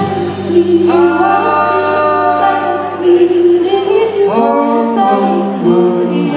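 Live band performance: voices singing long held notes in harmony, a woman's voice among them, with the band's guitars behind.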